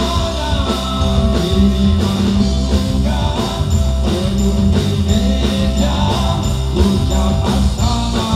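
Live rock band playing with a male lead vocal sung into a handheld microphone, electric guitar, and a steady drum beat, loud through the stage sound system.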